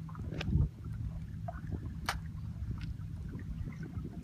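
Steady low rumble of a boat out on the open water, with wind and water against the hull, and a single sharp click about two seconds in.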